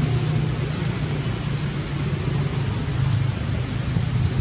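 Steady outdoor background noise, an even hiss over a low hum, with no distinct calls or knocks.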